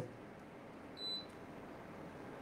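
A single short, high electronic beep about a second in, over a faint steady hiss of room tone.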